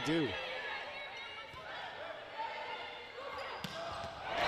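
Indoor volleyball rally: faint ball contacts and court sounds over a low crowd murmur, with one sharp hit of the ball late on as the winning attack is struck.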